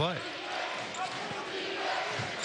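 Steady arena crowd noise at a live basketball game, with a basketball being dribbled on the hardwood court.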